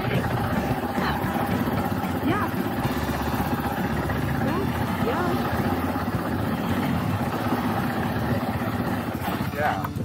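Dual-sport motorcycle engines idling steadily, with faint voices in the background.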